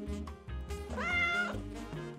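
A single cat meow about a second in, lasting about half a second, over background music.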